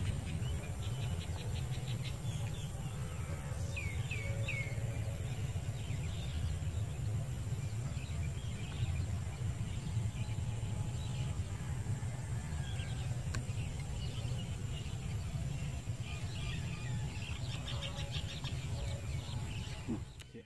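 Small birds chirping and trilling in open countryside, with three quick rising chirps about four seconds in, over a steady low rumble.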